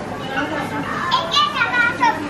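Children's voices, high-pitched talking and calling, loudest in the second half, over a steady background murmur of other voices.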